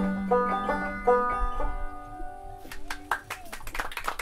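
Banjo playing the closing phrase of the song: plucked notes over a held low note, ending on a final chord that rings out and fades. About two and a half seconds in, scattered hand clapping begins.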